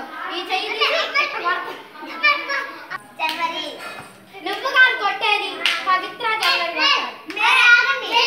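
Young children's high-pitched voices overlapping in a group as they play a hand-clapping circle game, with a few sharp hand claps among them.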